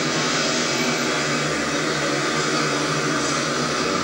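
Speedway bikes' single-cylinder methanol engines running flat out as the riders race round the oval, a steady unbroken drone.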